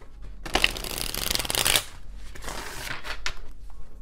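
A deck of tarot cards being shuffled by hand: a dense run of rapid card flutter lasting about a second and a half, then a softer, shorter stretch of shuffling.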